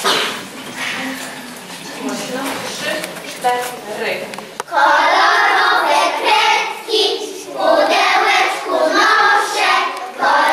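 A group of young children singing together in unison, starting loudly about five seconds in and carrying on with a short break in the middle; before that, softer scattered voices.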